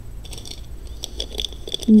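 Beads and metal costume jewelry clicking and rustling softly as hands sort through a pile of it, a scatter of small faint ticks.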